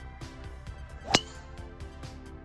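Golf club striking a ball off a hitting mat: one sharp, ringing crack a little over a second in, the loudest sound here, over background music with a steady beat.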